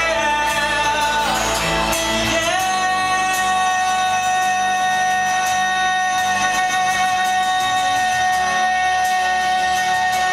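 Live rock band playing, with a male singer on acoustic guitar singing a few notes and then holding one long high note from about two and a half seconds in.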